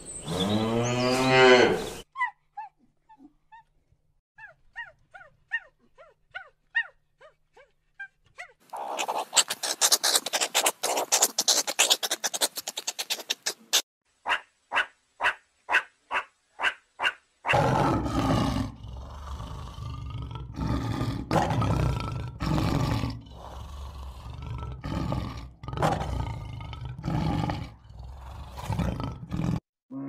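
A run of different animal calls. It opens with a cow mooing for about two seconds, followed by scattered short chirps, a few seconds of rapid chattering calls, and about a dozen evenly spaced calls. For roughly the last twelve seconds, loud repeated growls and roars take over.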